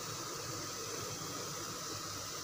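Chicken frying in a pan, giving a steady, even hiss.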